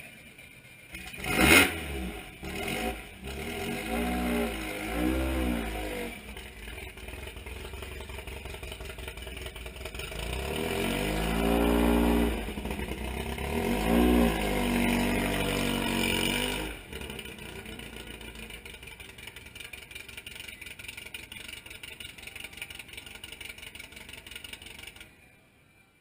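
Air-cooled flat-four engine of a 1955 VW Beetle, with a sharp burst about a second and a half in, then three revs rising and falling in pitch. After the third rev it drops to a lower, steady running sound as the car moves off, fading out near the end.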